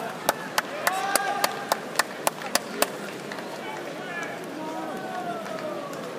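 About ten quick, evenly spaced handclaps close by, roughly three to four a second, stopping about three seconds in, over the murmur and chatter of an arena crowd between points.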